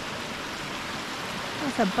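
Steady rushing of a small icy mountain stream, with speech starting near the end.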